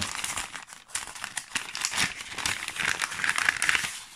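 Crinkling and rustling as a cloth gift pouch is handled open and a stack of paper scratch cards is pulled out of it, a dense crackle that gets louder near the end.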